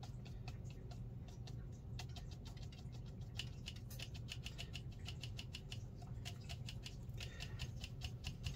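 Light, rapid taps of a bristle brush dabbing paint onto watercolour paper, a few a second and quickening to about six a second midway, over a low steady hum.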